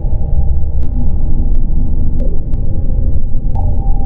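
Loud, deep rumbling drone of an ambient soundtrack, with a few held tones above it that shift every few seconds and faint scattered clicks.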